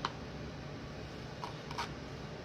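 Metal fork clicking against a plastic food container as it spears pickle and beet slices: a few faint short clicks, mostly near the end.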